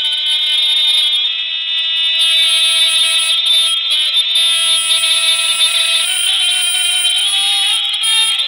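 A loud, steady held tone at one pitch with a stack of overtones, wavering slightly about six seconds in.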